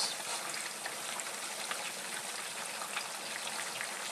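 Peanut oil sizzling steadily as potato fries, jalapeno slices and onion rings deep-fry in a pot, an even hiss with faint crackles through it.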